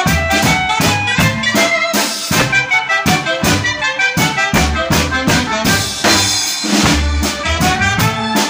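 Acoustic drum kit played live along to a recorded Romagnolo mazurka. The drums keep a steady beat on drums and cymbals under the band's melody.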